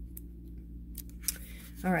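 Quiet room tone with a steady low hum and a few faint, short clicks, then a woman says "all right" near the end.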